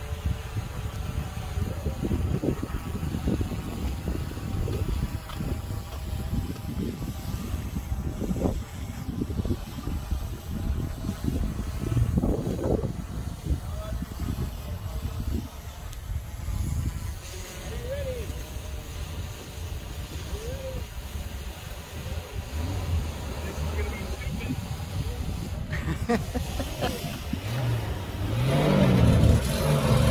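Low rumble with scattered voices of onlookers; near the end the engines of 1948 Davis Divan three-wheeled cars rise in pitch and grow louder as the cars launch from the line.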